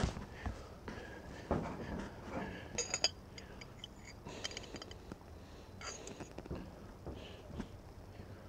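Metal fork clinking and scraping against the inside of a glass jar while a hot dog is worked out of it: scattered light taps, with brief ringing clinks about three seconds in and again about six seconds in.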